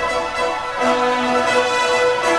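Background music with sustained, held notes and little bass.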